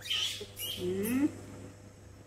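Baby macaques calling: a short, harsh, high squeal right at the start, then a longer call that rises and falls in pitch about half a second to a second in.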